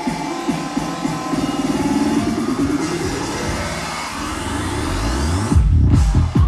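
Electronic dance music played loud over a festival sound system. A rising sweep builds over the second half, then a heavy bass line and kick drum come in near the end.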